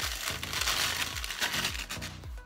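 Crinkling of a paper cereal bag as wheat biscuits are tipped out of it into a plastic bowl, over background music with a steady bass beat.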